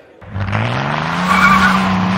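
Car sound effect of a hard getaway: after a brief silence the engine revs up, rising in pitch and then holding, while the tires screech, loudest midway.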